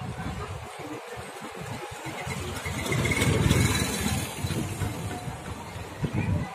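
A motor vehicle engine running in a street, with a low rumble that swells to its loudest near the middle and then eases off.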